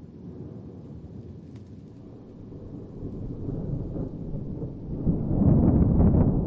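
A deep rumbling end-screen sound effect that builds from about three seconds in and is loud near the end.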